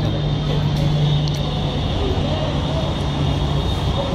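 Outdoor street background: a steady low mechanical hum that drops away shortly before the end, with faint voices in the background.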